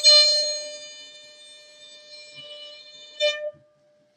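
Fiddle's last held note ringing out and fading away at the end of a tune, followed about three seconds in by one short final bowed note that stops cleanly.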